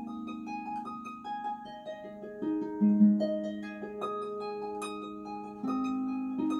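Solo pedal harp playing: single plucked melody notes ringing out over held low bass notes, the loudest a low note about three seconds in.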